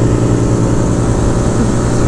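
Modified 2022 Honda Grom's single-cylinder 125 cc engine, with aftermarket cam, intake and ECU flash, running at a steady pitch under load in fifth gear.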